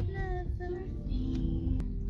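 A high, child-like voice singing a few short notes, then steadier held tones, over the continuous low rumble of the vehicle's engine and tyres heard from inside the cabin. A single sharp click near the end.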